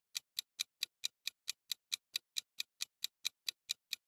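Countdown-timer ticking sound effect, clock-like ticks in an even run of about four and a half a second, marking the time left to answer a quiz question.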